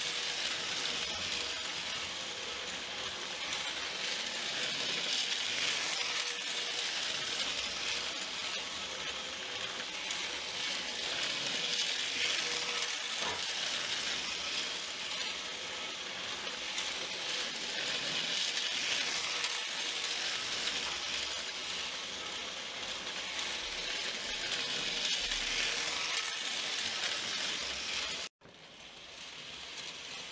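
A steady hiss with no distinct events, dropping out briefly near the end.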